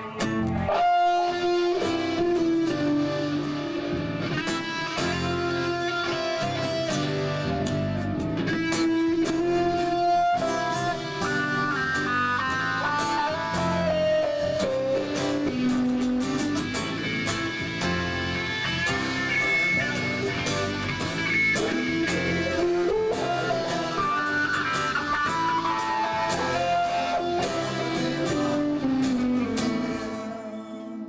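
Band playing an instrumental passage of a rock song, led by electric guitar. A melodic line moves over plucked and strummed chords and bass.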